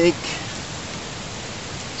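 Steady, even background hiss with no distinct sounds in it.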